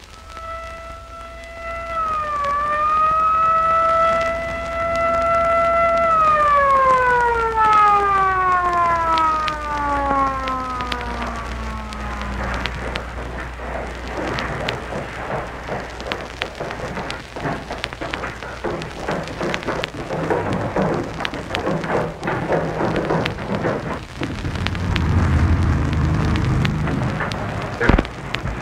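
A siren sounds on one steady pitch for about five seconds, then winds down in a long falling glide over the next six seconds. After it comes a steady rushing noise.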